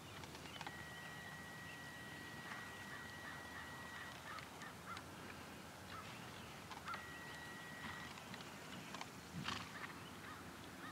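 Faint outdoor background with scattered short bird calls and a steady high whistle-like tone that holds for about three seconds, then returns briefly. A louder call, typical of a goose honk, comes near the end.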